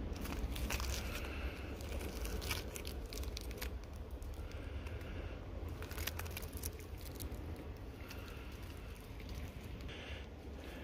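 Rock samples handled in rubber-coated work gloves close to the microphone: irregular crinkling, scraping and small clicks of glove and rock rubbing and knocking together, over a low rumble.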